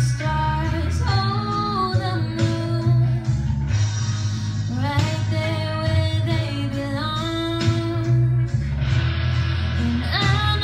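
A woman singing a slow pop ballad into a handheld microphone over instrumental accompaniment, her melody gliding between held notes.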